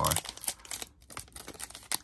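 Foil wrapper of a trading card pack crinkling and crackling as it is handled and worked open, with a short lull about halfway through.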